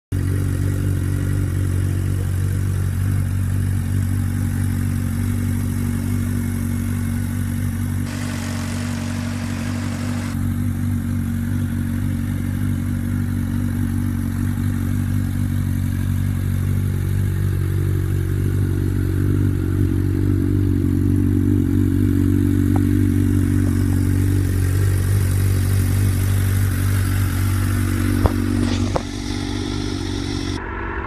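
Suzuki GSX-R sportbike's inline-four engine idling steadily through an aftermarket carbon slip-on exhaust. A few light clicks near the end.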